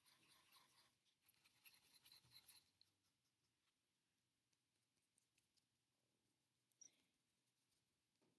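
Near silence: a paintbrush faintly scrubbing in a pan of cake watercolour paint for the first two to three seconds, then a few faint ticks.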